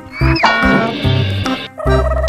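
Background keyboard music with an animal-call sound effect laid over it. The call comes in early, bends up in pitch and then holds before cutting off shortly before the end.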